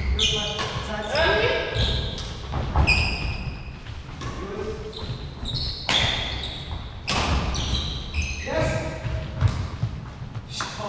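Badminton doubles rally: sharp cracks of racket strings hitting the shuttlecock, several in quick succession, with short squeaks of court shoes and thudding footwork on the wooden floor. The hits ring on in a large echoing hall.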